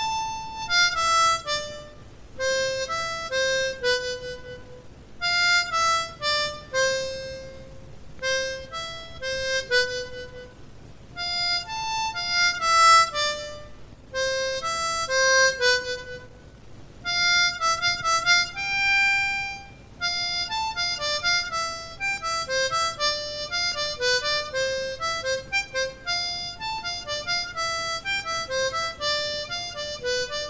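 Diatonic harmonica in C by Dortel played solo: single blown and drawn notes in short melodic phrases with brief pauses between them. The notes come quicker in the last third.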